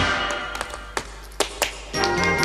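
The band music drops out, leaving a handful of sharp, irregularly spaced taps from tap shoes on a stage floor: a tap-dance break.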